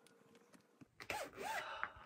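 Faint crinkles and clicks of a plastic zip-top bag being pried at, then a woman's high gasp about a second in as it comes open.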